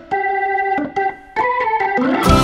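Organ music: a sparse passage of held notes and chords that change about every half second, with a brief drop-out a little past the middle.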